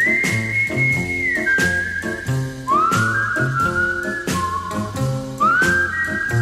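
A whistled melody, one clear note at a time, slides up into each new note over a gentle 1950s pop ballad accompaniment with a steady bass.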